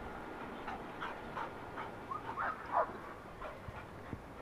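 A search dog whining: a string of about eight short whines, each falling in pitch, coming roughly two a second.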